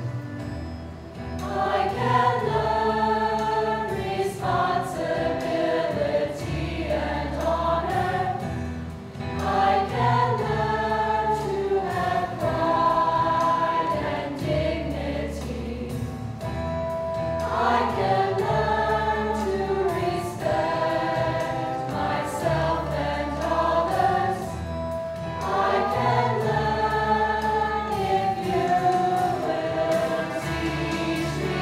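A school choir of student voices singing a song together in harmony, phrase after phrase, over a sustained instrumental accompaniment.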